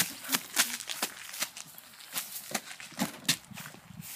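Footsteps on dry, weedy dirt, about two steps a second.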